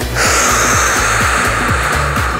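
A long, forceful breath out through the mouth, a steady hiss starting just in, over background music with a steady beat.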